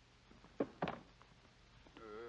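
A man's short, hesitant "uh" about halfway through, over a quiet soundtrack background with a faint low steady hum.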